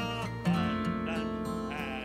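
A hymn sung by a man's voice with a slight waver in the held notes, over strummed acoustic guitar; a new chord and sung note come in about half a second in.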